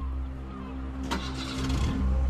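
A car engine running with a steady low hum, with a short rush of noise about a second in.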